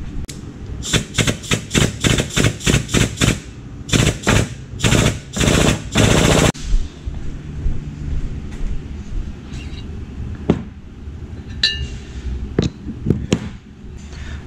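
Shop press pressing a tapered bearing race into an aluminium crankcase half. It gives a quick run of noisy bursts, about four a second, then a few longer bursts and a sustained one that cuts off suddenly, followed by a few scattered knocks.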